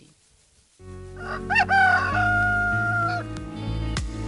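Radio-show jingle: a rooster crows once, with a short rising start and a long held final note, over a music bed with a steady bass that starts about a second in.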